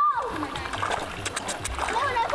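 Water splashing and churning as a shoal of fish thrashes at the surface, scrambling for food held in a hand in the water.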